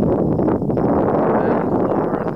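Wind buffeting the camera's microphone: a loud, steady rushing noise that fades near the end.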